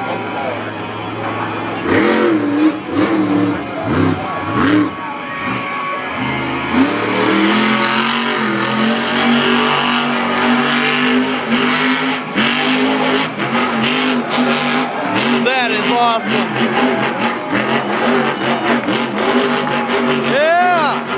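A monster truck's supercharged V8 engine revving hard while the truck spins donuts in the dirt. The pitch rises and falls in quick blips at first, then holds at high revs for several seconds, then surges again near the end.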